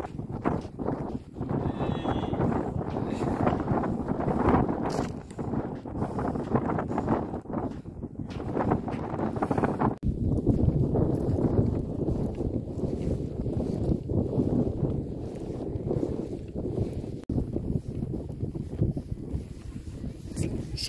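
Wind buffeting a handheld phone's microphone during a camel ride, with knocks and rustles from handling as the rider sways. The higher hiss thins out about halfway through.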